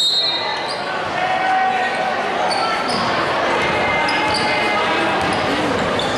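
Basketball game in a gym, with a crowd chattering, a basketball being dribbled on the hardwood court, and scattered short sneaker squeaks. The sound echoes around a large hall.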